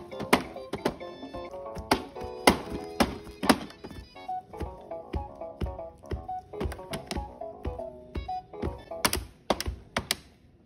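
Children's electronic toy drum playing a simple electronic tune with loud, unevenly spaced drum hits.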